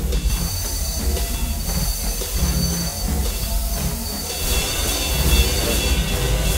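Harsh experimental noise music: a dense low rumble under a hissing layer, with thin, high, steady whining tones held above it. The high layer thickens over the last second and a half.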